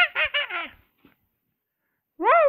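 A high-pitched, put-on character voice: a few quick, falling syllables that stop just under a second in, followed by silence.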